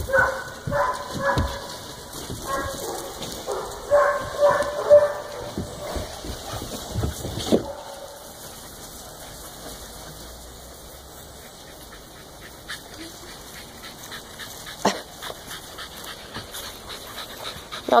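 Dogs barking and whining in a run of short calls over roughly the first seven seconds, then quieter, with a few faint knocks.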